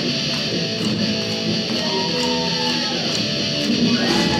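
Live rock band playing with electric guitars to the fore, over steady, evenly spaced cymbal ticks.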